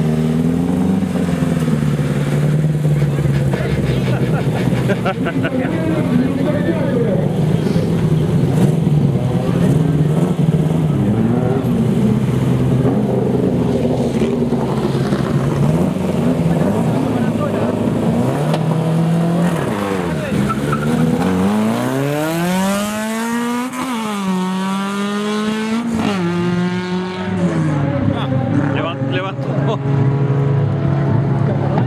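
Fiat hatchback's engine revved and held at the start line of a drag run, pitch wavering up and down with the throttle, then launching about two-thirds in and accelerating hard, the pitch climbing and dropping at two gear changes.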